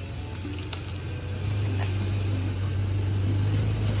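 Toyota Land Cruiser Prado 150's petrol engine running at a low idle while the SUV creeps slowly forward. It is a steady low hum that grows a little louder about a second and a half in.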